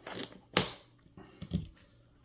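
Trading-card packs and boxes handled on a desk: a short rustle, a loud sharp clack about half a second in, then a few fainter taps.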